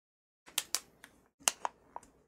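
A few sharp clicks and taps in two quick clusters, about half a second and a second and a half in.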